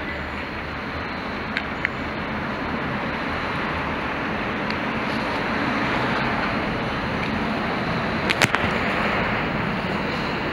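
Steady outdoor noise of a street, a constant hiss with no voices, broken by a couple of faint clicks early on and a sharper double click about eight and a half seconds in.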